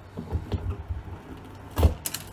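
Hands working the stem and core out of a red bell pepper: soft dull bumps of the pepper being gripped and twisted, then a sharp crack near the end as the stem and core tear free.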